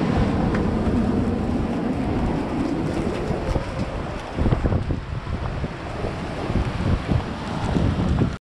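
Wind buffeting the camera's microphone: a steady low rumble, with louder gusts about halfway through and again near the end.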